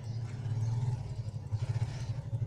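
A low engine rumbling steadily, with a quick pulsing throb. It grows a little louder about half a second in.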